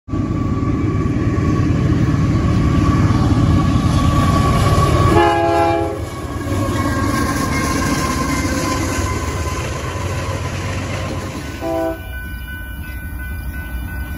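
Union Pacific diesel freight locomotive passing close by with a heavy rumble and wheel clatter, sounding one short chorded horn blast about five seconds in. Near the end, a second train's horn sounds briefly, followed by quieter, steady ringing from a grade-crossing bell.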